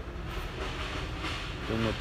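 Thaco Kia K165 light truck's diesel engine idling with a steady low rumble.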